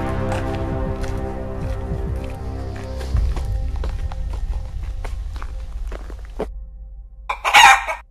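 Background music of sustained, held chords fading out, with faint scattered clicks over it. Near the end comes one short, loud burst of sound that cuts off abruptly.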